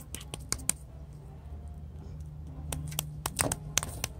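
Sticky flour-and-water dough being worked between the fingers, giving a scatter of small, irregular clicks and ticks, thickest in the first second and again near the end.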